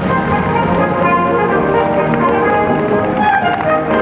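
Brass band music playing held chords at a steady level.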